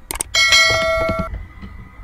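Two or three quick clicks, then a bright bell ding that rings on and fades away over about a second: a notification-bell sound effect.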